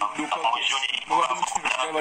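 A person speaking continuously, heard through a phone's speaker.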